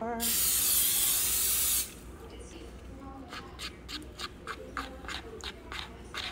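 Aerosol cooking spray hissing steadily for nearly two seconds, starting and stopping abruptly. Then quieter light clicks and scrapes of a spoon against a plastic bowl as batter is spooned into a mini waffle maker.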